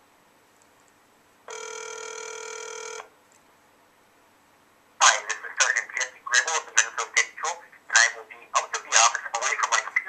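A phone call ringing out on a mobile phone held on speaker: one buzzy ring-back tone about a second and a half long, then a voice on the line speaks from about halfway through, thin through the phone's small speaker.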